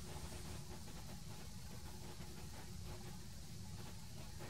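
Quiet room tone: a faint, steady low hum with no distinct events.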